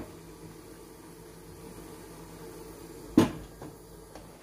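A single clunk about three seconds in as the cloth-wrapped lid is set on a stainless steel steamer pot, over a steady low hum from the steaming pot on the stove.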